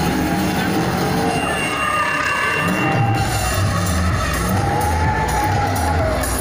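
Loud music with a repeating bass beat, and a car engine revving underneath it.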